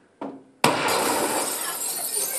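A sudden loud crash about half a second in, with a long noisy tail that carries on to the end. A brief softer sound comes just before it.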